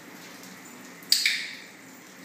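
A dog-training clicker clicked once about a second in: a sharp snap with a short ring. The click marks the puppy's down for a treat.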